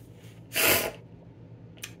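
A single short, sharp, breathy burst from a person, about half a second in, with faint clicks shortly before the end.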